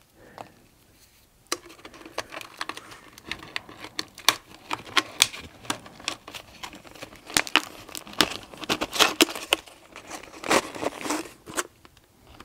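Thin-walled plastic water bottle crinkling and crackling, with wire rustling, as wire is stuffed into it. The crackling starts about a second and a half in and goes on in irregular clusters of clicks.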